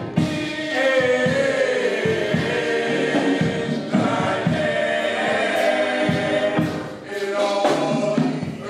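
Male gospel vocal group singing in close harmony into microphones, several voices holding and sliding sustained notes together.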